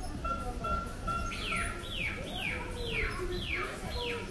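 A bird calling: a few short, even whistled notes, then five quick descending chirps about half a second apart, over a low background murmur.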